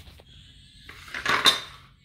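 A short metallic clatter and rattle, rising to its loudest about a second and a half in, as hard metal objects knock together.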